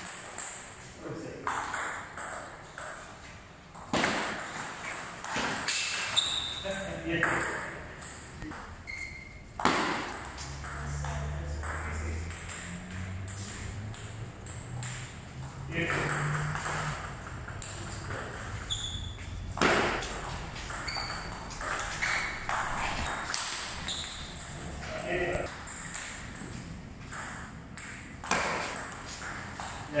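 Table tennis ball clicking back and forth off the bats and the table in rallies, with short pauses between points, echoing in a large hall.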